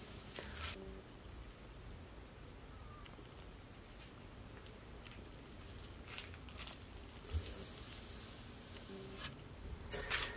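Quiet room tone with a steady low hum, broken by a few faint rustles and soft clicks, the clearest a little past the middle.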